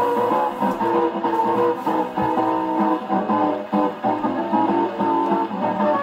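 A 1929 dance-band jazz 78 rpm record playing on an acoustic gramophone's soundbox, with plucked strings in the band. The sound is thin, with no deep bass or high treble.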